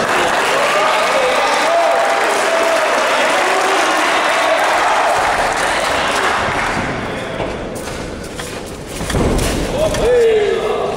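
Spectators in a large hall shouting and cheering at a cage fight, many voices overlapping, loud and then easing off after about seven seconds. Near the end a dull thump.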